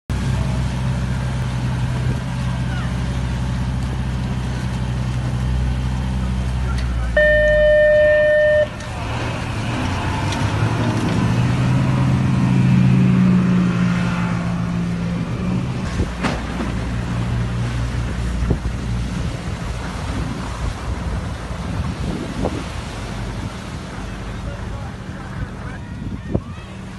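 The twin outboard engines of an RNLI Atlantic 85 inshore lifeboat running and revving up and down as the boat heads out through the water. About seven seconds in, a loud steady horn-like tone sounds for about a second and a half.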